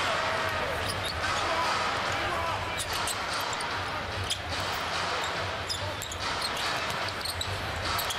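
Arena crowd murmur during live play, with a basketball being dribbled on the hardwood court in scattered sharp bounces.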